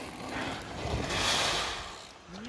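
Mountain bike tyres rolling over a loose gravel fire road as a rider passes close by, a crunching hiss that swells to its loudest in the middle and then fades.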